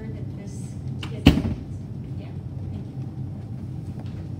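A single sharp thump about a second in, louder than anything else, over a steady low room hum.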